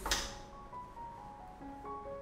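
A single sharp plastic clack as the headrest of a mesh office chair is pushed onto the chair back and snaps into its button lock, near the start, over steady background music.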